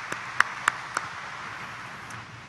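A congregation applauding. One close pair of hands claps in a steady beat of about three and a half claps a second and stops about a second in, while the softer applause of the crowd carries on.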